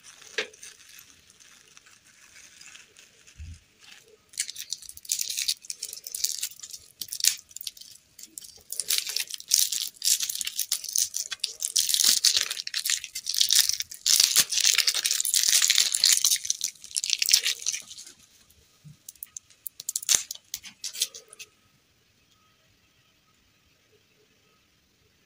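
Crinkly plastic lollipop wrapper being torn and peeled off a small hard-candy lollipop by hand. The dense crackling starts about four seconds in, is loudest in the middle, and stops a couple of seconds before the end.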